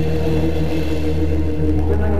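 Live rock band playing through a concert PA: sustained held chords over a steady deep bass drone, with no drum beats.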